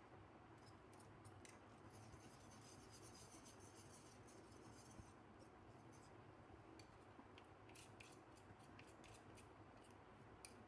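Very faint scratching and light ticking of a wire whisk stirring thick gram-flour (besan) batter in a bowl, barely above room hiss.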